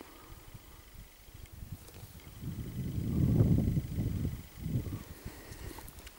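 Wind gusting over the microphone: a low rumble that builds about two seconds in and dies down again near the end.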